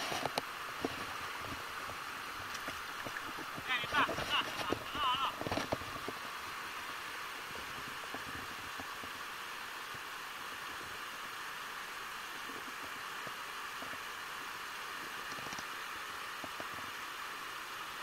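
Steady rush of river water running over rocks and rapids, with a few faint clicks in the first few seconds.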